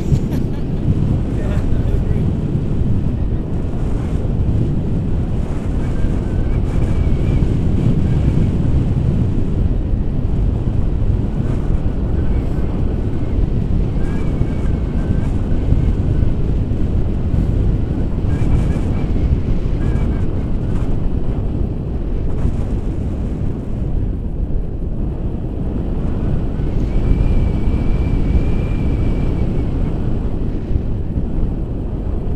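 Wind buffeting an action camera's microphone during a tandem paraglider flight: a loud, steady rumble. A faint high tone comes and goes several times.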